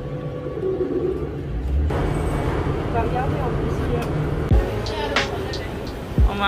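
Airport rail shuttle carriage running, a steady low rumble, followed about two seconds in by busier ambience with voices, and a few knocks near the end.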